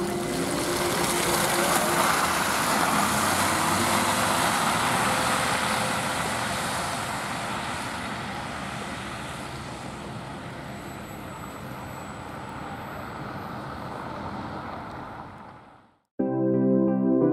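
Trolza-5265.08 Megapolis trolleybus pulling away: its electric drive whines, rising in pitch as it starts off. Tyre and road noise on the wet, slushy surface is loudest in the first few seconds, then slowly fades as the trolleybus moves off. The sound fades out near the end.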